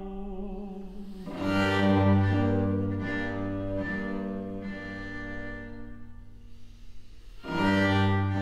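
Bowed strings with viola da gamba playing slow, sustained chords. A fuller chord swells in about a second and a half in, the sound thins out later, and a loud chord returns just before the end.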